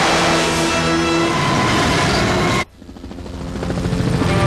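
Cartoon sound effect of a jet thruster firing: a loud, steady rush with a low hum in it that cuts off suddenly about two and a half seconds in. A low engine drone then fades up.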